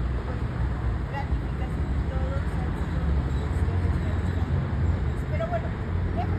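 Steady low rumble of street traffic, with a woman's voice faintly heard now and then.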